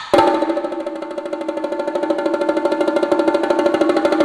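Solo percussion on sticks: a loud accent, then a fast, even roll of strokes across tuned drums that gradually swells.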